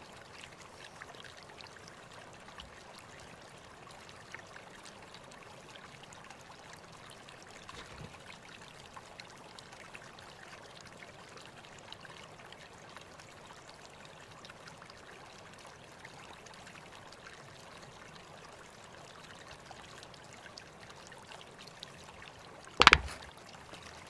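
Faint, steady background hiss with a few soft scattered clicks, and one sharp, loud click about a second before the end.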